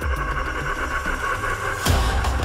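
Trailer sound design: a dense, steady rumbling swell that ends in a heavy impact hit near the end, on the cut to the title.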